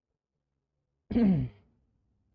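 Near silence, then about a second in a man's short, breathy, sigh-like vocal sound lasting about half a second, falling in pitch.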